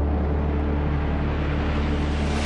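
A car rushing past at speed, a noisy engine-and-road whoosh, over a low steady music drone.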